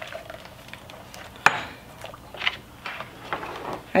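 A utensil stirring in a stainless steel pot of liquid, with a few scattered clinks against the pot and the glass measuring cup; the sharpest clink comes about a second and a half in.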